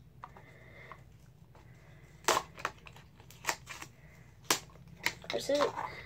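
Small cardboard toy box being torn open by hand: a series of sharp rips and snaps, about half a dozen over the last four seconds.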